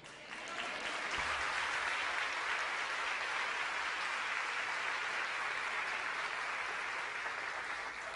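A congregation applauding, building up over the first second and holding steady before dying away near the end.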